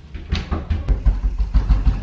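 A rapid run of heavy, low thumps, about five a second, starting a moment in and going on steadily.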